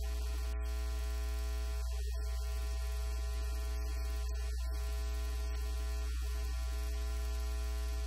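Steady electrical mains hum: a strong low drone with a ladder of fainter steady overtones above it.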